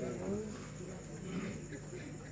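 A pause in a live Qur'an recitation: faint scattered background voices and a steady high-pitched whine underneath.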